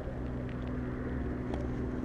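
A motor vehicle engine running with a steady low hum.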